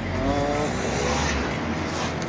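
A motor vehicle's engine running nearby, its pitch rising slightly for about the first second and a half, over a low rumble and road-like hiss.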